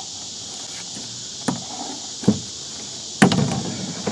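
Plastic knocks from handling inside an empty plastic IBC tote as a plastic bottle used to press down glued mesh is set down on the floor and a hot glue gun is picked up. There are three knocks, the loudest about three seconds in with a short clatter after it. A steady high insect chirring runs behind.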